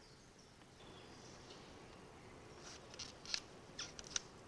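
Faint background hush, then in the last second and a half a handful of short, sharp clicks and crackles on the forest floor.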